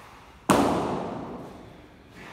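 A single sharp metal clank of a dumbbell being knocked or set down about half a second in, ringing and echoing in the room as it fades over about a second and a half.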